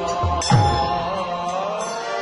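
Bengali kirtan music. A khol drum gives two deep strokes in the first half second, each with a falling bass tone, over held harmonium notes and a wavering, gliding melody line.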